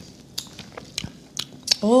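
Mouth sounds of someone tasting a sip of cider: a few scattered wet lip smacks and tongue clicks, with a person's voice starting near the end.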